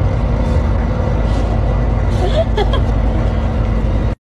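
Steady low engine rumble and drone of a city bus, heard from inside the passenger cabin, with a faint voice briefly a little past the middle.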